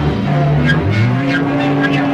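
Heavy psychedelic rock music: loud, sustained distorted guitar and bass notes, with a low note sliding up in pitch about a second in.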